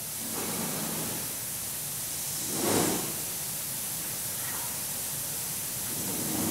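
Steady background hiss of the studio recording during a pause in talk, with one brief louder swell of breathy noise a little before the middle.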